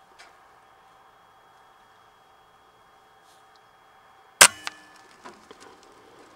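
A single air rifle shot about four and a half seconds in: one sharp crack with a brief metallic ring. It is followed by a couple of lighter knocks, over a faint steady hum.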